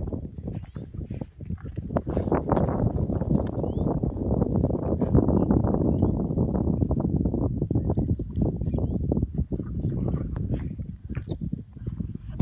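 Wind buffeting the microphone: a loud, uneven low rumble, with a few faint high chirps now and then.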